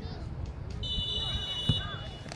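Referee's whistle blown once, a steady shrill tone of about a second and a half, signalling the restart of play after an injury stoppage. Faint distant voices can be heard around it.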